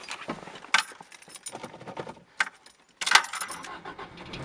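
Car keys jangling and clicking as they are handled at the ignition of a 1989 Toyota MR2, with scattered sharp clicks and a louder rattle about three seconds in.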